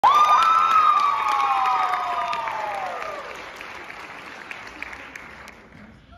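Audience applauding and cheering, with long high-pitched shouts and whoops over the clapping in the first three seconds. The applause fades away and has died out about five and a half seconds in.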